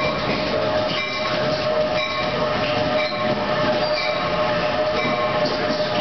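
NJ Transit ALP46 electric locomotive and bi-level passenger cars arriving at a station platform and rolling past, a steady rumble of the passing train. A steady whine sits over it, with brief high metallic tones about once a second.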